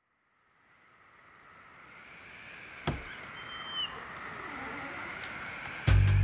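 A soft hiss fades in and slowly grows, a single sharp knock sounds about halfway through, and a few brief high whistling tones follow. Just before the end the song's accompaniment comes in loudly with bass and pitched instruments.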